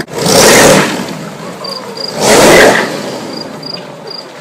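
Rat-rod hot rod's engine accelerating hard in two loud bursts about two seconds apart, each dying back as the car pulls away.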